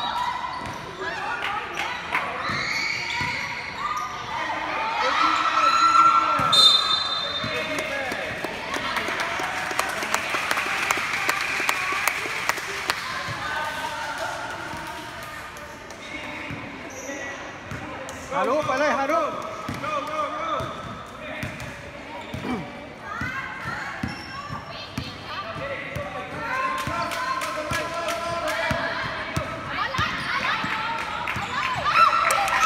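A basketball being dribbled and bouncing on a hard court in a children's game, with repeated short impacts, amid shouting voices of players and onlookers.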